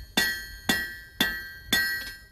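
Blacksmith's hammer striking an anvil in a steady rhythm, about two blows a second, each blow ringing out with a bright metallic tone that fades before the next.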